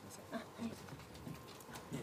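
Faint handling noise in a quiet room: scattered soft clicks and knocks as someone moves about at a podium.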